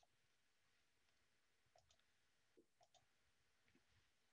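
Near silence with two faint double clicks about a second apart: computer mouse clicks.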